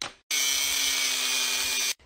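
A hammer strikes the steel safe once. Then an angle grinder cuts into the safe's steel for about a second and a half, running evenly with a steady hum, and stops suddenly.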